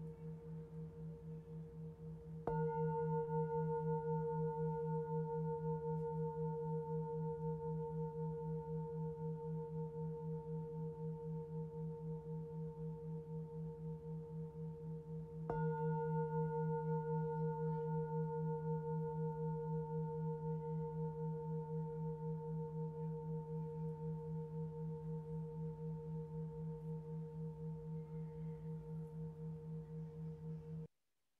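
Singing bowl struck twice, about two and a half seconds in and again about halfway through, each strike ringing on with a low hum and higher overtones that waver in a slow, even beat while fading gradually. The bowl is already ringing from an earlier strike at the start.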